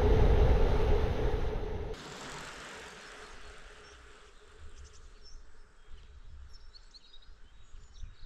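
Wind rushing over a handlebar-mounted camera while riding a bicycle along a village road, cutting off suddenly about two seconds in. Then a quiet countryside ambience with a few faint bird chirps.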